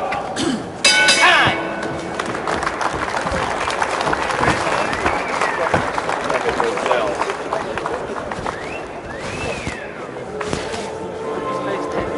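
Boxing ring bell struck once about a second in, ringing briefly to end the round, followed by steady crowd noise and voices.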